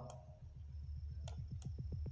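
Faint, soft clicking: a run of short low clicks that come faster and faster, with a faint steady high whine in the second half.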